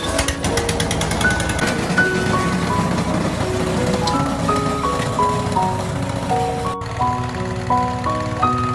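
Light background music with a mallet-percussion melody over the steady running of a gasoline two-stage snowblower engine.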